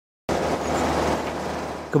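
Steady road noise of a moving vehicle with a low engine hum, starting after a brief silence and fading down toward the end.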